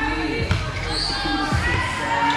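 Volleyballs thudding as they bounce on a hardwood gym court, a few dull strikes, over background music and voices in the hall.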